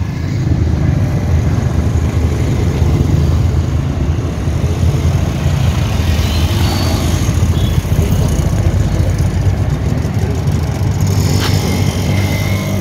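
A motor vehicle engine running, a steady low rumble.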